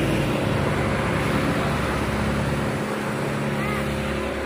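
Fire engine's motor running steadily to drive the hose pumps, under a continuous rushing noise of water spray and the burning tanker.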